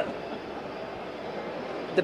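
Steady background room noise from a crowded hall during a pause in speech, an even hiss-like murmur with no distinct voices or events.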